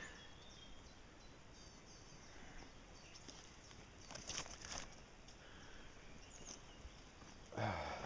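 Faint outdoor garden ambience, with a short rustle of footsteps on soil and leaf litter a little past the middle.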